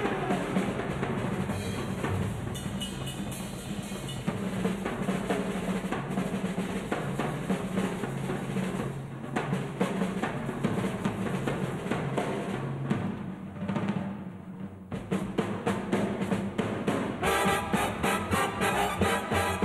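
Drum solo on a jazz drum kit, with snare rolls, bass drum and cymbals in a dense run of strokes. The big band's horns come back in near the end.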